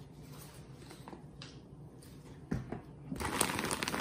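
Faint handling sounds and a couple of sharp knocks about two and a half seconds in, then, in the last second, the loud rustling crinkle of a plastic substrate bag being wiped down with a paper towel.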